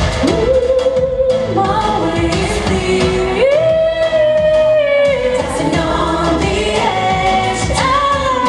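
A young woman singing a song into a handheld microphone over musical accompaniment, holding some notes for about a second.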